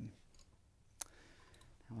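Near silence in a small studio, broken about a second in by one short, sharp click.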